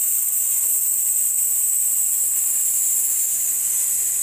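A woman's long, steady 'sss' hiss as she lets her breath out slowly and evenly through her teeth. This is a singers' breath-support exercise: air drawn in through the nose into the belly, then released on the letter S.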